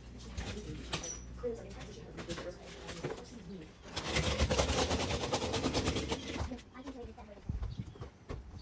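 Small plastic wheels of a child's toy stroller knocking and clicking as it is pushed over a floor. From about four seconds in comes a louder, dense rattle for two or three seconds as the wheels roll across the gaps between wooden deck boards.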